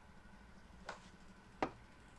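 A golf club strikes the ball, then about two-thirds of a second later there is a louder sharp knock as the ball hits a tree trunk.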